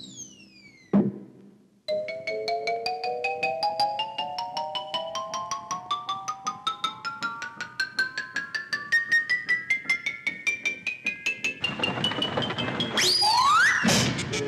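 Cartoon music and sound effects. In the first second a high whistle falls in pitch and ends in a thump. Then short, quick mallet-like notes, about four or five a second, climb steadily in pitch for about ten seconds, matching the cat drawing in the spaghetti strand. Near the end there is a noisy burst with a whistle swooping up and back down.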